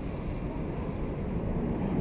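City street ambience: a steady low rumble of traffic and passers-by on a busy sidewalk, getting a little louder in the second half.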